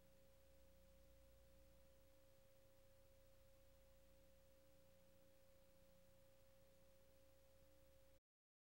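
Faint, steady single-pitch electronic tone, like a sine test tone, held unchanged over a low hum.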